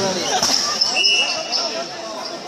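Several voices of spectators and players talking and calling over one another at a futsal game on a hard court. A short, high whistle-like tone sounds about halfway through.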